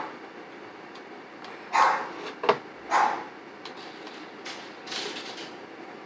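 Dog barking: three short barks spread across the few seconds, with a single sharp click between the first two.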